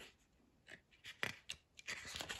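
A page of a small paperback book being turned by hand: a few short, faint paper rustles, beginning just under a second in.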